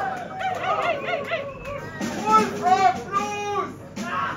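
Audience cheering and whooping as a song ends, many overlapping rising-and-falling 'woo' shouts.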